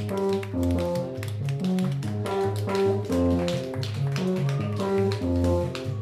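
Live band playing an instrumental passage on plucked electric bass and electric guitar: a melodic line of short, picked notes with no drums.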